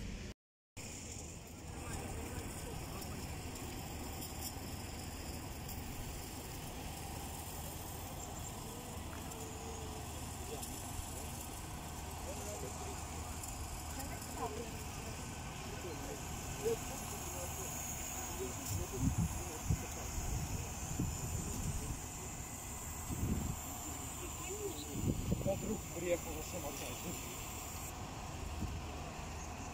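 Outdoor ambience: a steady background hush with faint voices of people talking at a distance, more noticeable in the second half.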